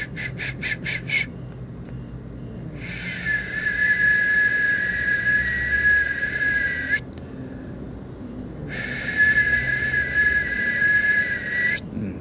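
A high whistling tone: a quick run of about six short toots, then two long steady notes, the first lasting about four seconds and the second about three.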